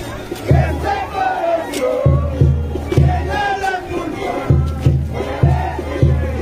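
A group of parade dancers shouting together over festival band music with a heavy drum beat about twice a second; the beat drops out briefly twice.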